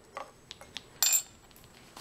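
Small clear glass bottle handled as a folded slip of paper is put into it: a few light taps, then a brief glassy clink about a second in.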